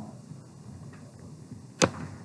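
Marker striking a whiteboard once with a single sharp tap near the end, over quiet room tone.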